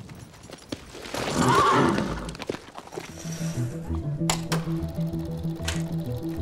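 A horse whinnies about a second in, a single call that rises and falls in pitch. Halfway through, music with a steady beat starts and runs on.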